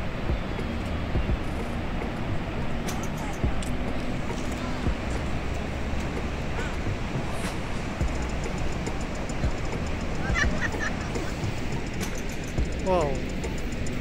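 Steady rushing roar of Kaieteur Falls, a dense even noise, with faint background music underneath and a short voice-like call near the end.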